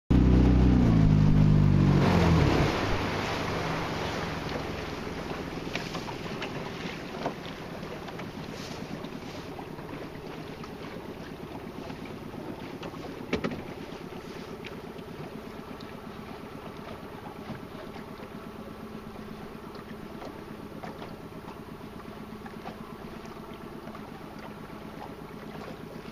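A small boat's motor running loudly, then throttled back about two seconds in and left running at a low idle under faint wind and water noise. A single sharp knock comes about halfway through.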